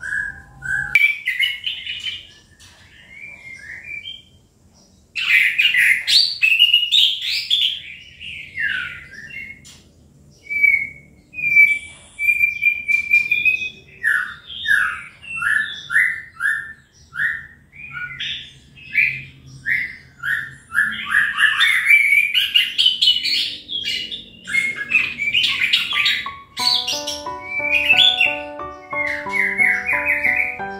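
Caged chestnut-capped thrush (anis kembang) in full song after its moult: a long, varied run of quick chirps, short whistled notes and rapid repeated phrases, with a brief pause about four seconds in. Background music comes in near the end.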